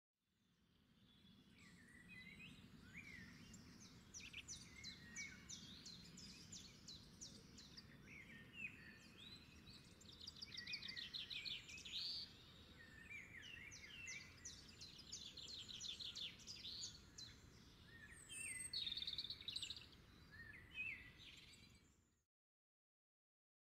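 Faint birdsong: many short chirps and quick rapid trills from small birds, over a low steady hum. It fades in over the first couple of seconds.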